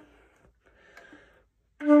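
A Schiller alto flute begins a held low note near the end, starting suddenly and sounding steady.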